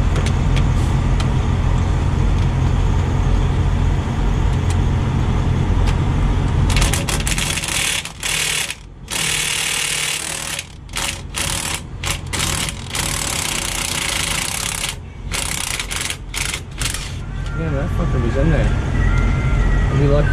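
Impact wrench run in repeated stop-start bursts for about ten seconds, starting about seven seconds in, loosening a bolt on the broken driveline. A low, steady engine rumble runs underneath throughout.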